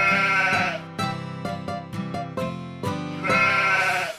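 Instrumental nursery-rhyme backing music with a regular plucked beat, and a sheep bleat sound effect heard twice: at the start and again near the end.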